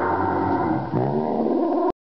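A boy screaming in a voice pitched down low: one long yell, a brief break about a second in, then a second long yell that cuts off suddenly near the end.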